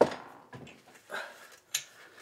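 A heavy three-phase electric motor being shifted on a wooden workbench: one sharp knock at the start, then faint clinks and small handling noises.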